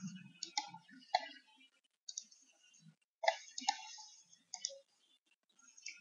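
Faint computer keyboard keystrokes clicking at a slow, irregular pace, a few keys at a time, as a password is typed in.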